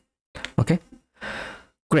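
A man's voice says a short word, then a brief audible exhale, like a sigh, about a second in. There are gaps of dead silence between the sounds.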